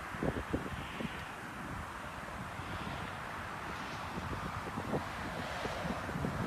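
Wind buffeting a handheld microphone over a steady background rush, with a few soft thuds, mostly in the first second and again around five seconds in.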